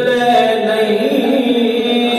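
A man's voice chanting a verse melodically into a microphone, drawing out long notes that slide slowly up and down in pitch and settle on a held tone near the end.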